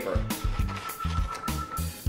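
Background music with a steady beat and bass line, and one high note held through most of it.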